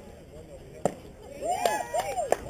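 A single sharp crack of the baseball about a second in as the pitch arrives at the plate, followed near the end by several voices shouting at once.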